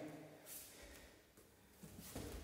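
Near silence, with faint scuffing and a soft breath from two grapplers moving in a clinch on a mat.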